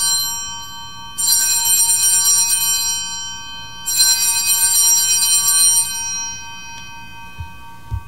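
Altar bells rung at the elevation of the consecrated host, a cluster of high, shimmering bell tones. One ring is already sounding and fading as it begins, then a second comes about a second in and a third about four seconds in. Each is a shaken peal that dies away over about two seconds.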